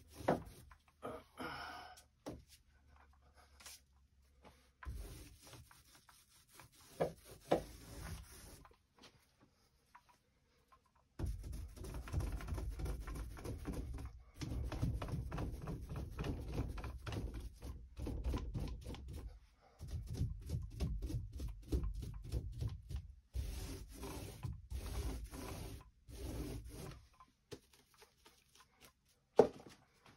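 A 1.5-inch angled Chinex-bristle paintbrush scrubbing primer onto a door panel: rapid back-and-forth rubbing in four spells of a few seconds each, with short pauses between them. A few scattered clicks and light knocks come before the brushing begins.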